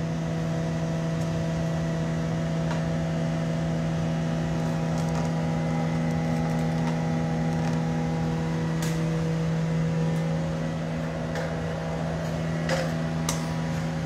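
Steady mechanical hum of glassblowing studio equipment, a constant low drone with fainter tones above it, with a few light clicks in the second half.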